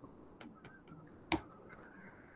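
Faint light taps of a stylus on a tablet's glass screen during handwriting, with one sharper, louder click a little past halfway.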